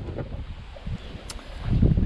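Wind buffeting the microphone outdoors, a low rumbling noise that swells near the end, with one light click about a second and a half in.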